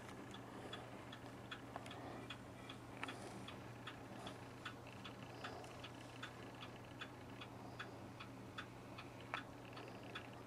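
Faint light ticking, roughly two or three small clicks a second, over a steady low hum.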